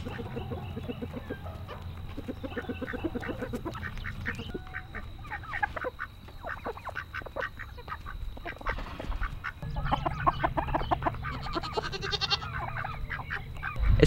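A flock of domestic poultry (turkeys, chickens and ducks) calling in quick runs of short clucks and yelps while feeding on dead flies scattered on the ground. The calls grow busier near the end.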